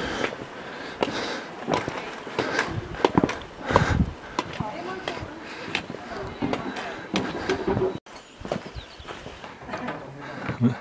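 Footsteps and trekking-pole tips tapping irregularly on a stone-flagged path, with faint voices in the background.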